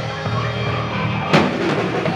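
Live rock band playing an instrumental passage: electric guitars, bass, keyboards and drum kit, with a sharp hit on the drum kit a little past halfway through.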